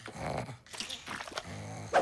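Cartoon snoring from sleeping characters: two low, rasping snores, the second near the end.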